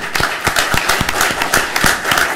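Audience applauding: many people clapping.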